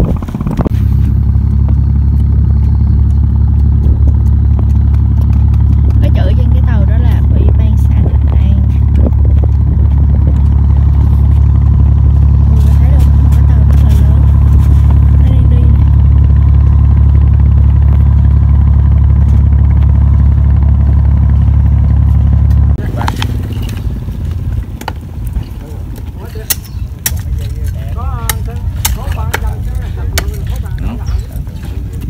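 Strong sea wind buffeting the microphone: a loud, steady low rumble that cuts off suddenly about 23 seconds in. After that it is much quieter, with scattered clicks and knocks.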